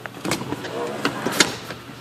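Rear split seatback of a 2013 Ford Escape being folded down: a few sharp clicks of the seat mechanism, then a louder knock about one and a half seconds in as the seatback comes down.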